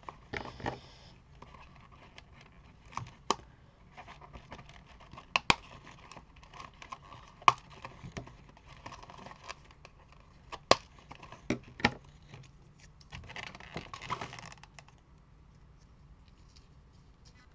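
Paper die-cut embellishments rustling and small pieces clicking against a cardboard box as hands sort through them, with a brief rustle at the start, scattered sharp clicks through the middle and a longer rustle near the end.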